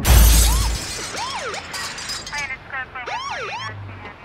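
A loud crash with a shattering sound, then a siren wailing in quick rising-and-falling sweeps, several overlapping and fading away.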